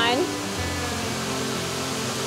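Steady rushing of a waterfall pouring into a rock pool, with soft background music underneath.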